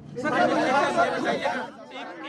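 Several men talking over one another at once: a loud jumble of overlapping voices lasting about a second and a half.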